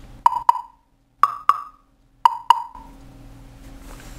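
Plastic percussion blocks struck with a stick in three pairs of quick hits. Each strike is a short, hollow knock with a brief ring, and each block sounds at its own resonant pitch, the larger block's lower.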